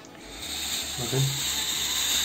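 Fakir Verda steam-generator iron releasing a strong jet of steam: a hiss that starts about a third of a second in, builds, then holds steady.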